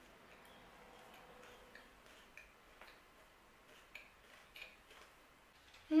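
Faint chewing of a protein bar with the mouth closed: a few small, irregular mouth clicks spread over several seconds.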